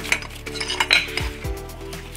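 A few light metallic clicks and clinks as small shifter linkage parts are handled, over background music.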